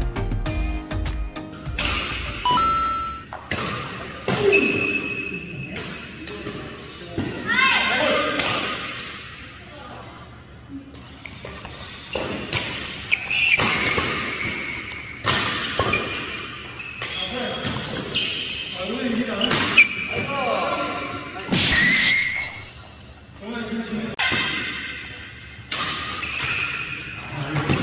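Badminton doubles rally in a large hall: rackets strike the shuttlecock again and again, with players' footwork on the court floor and the hall's echo. A short stretch of background music plays for the first couple of seconds.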